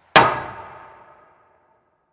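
A single metallic clang sound effect, struck sharply and ringing away over about a second.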